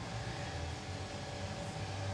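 Steady low hum with faint hiss: workshop background noise, with no distinct event.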